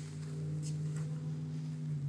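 Steady low hum made of several held tones, with no speech over it.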